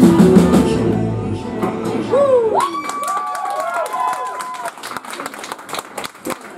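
A live rock band with drums and guitars finishes a song; the last chord rings out and stops about a second and a half in. The audience then cheers with high whoops and claps, the clapping strongest near the end.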